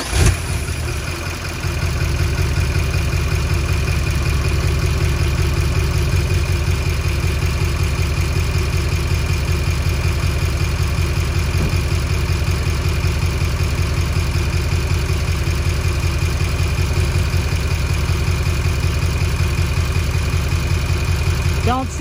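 LML Duramax 6.6 L V8 turbodiesel starting just after a fuel filter change. It runs from the first moment, steps up in level about two seconds in, and then idles steadily with an even rhythmic diesel pulse.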